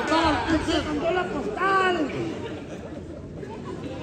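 People's voices shouting and calling out in a hall, over crowd chatter. The voices are loudest in the first two seconds and drop away after that, leaving background noise.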